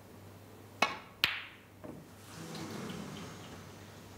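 Snooker shot: the cue tip strikes the cue ball, and under half a second later the cue ball clicks sharply into an object ball. A fainter knock follows about half a second after that.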